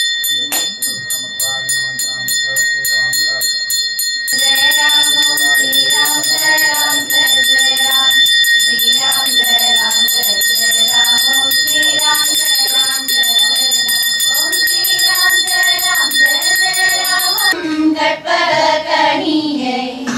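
A puja bell rung quickly and steadily during a Hindu arati, about three or four strokes a second, with voices chanting over it from about four seconds in. The bell stops a little before the end, leaving the chanting.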